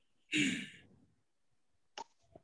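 A person's single short breathy sigh, lasting about half a second.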